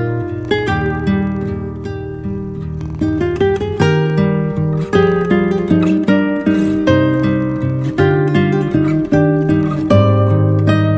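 Solo acoustic guitar music: a gentle melody of plucked single notes over sustained low bass notes.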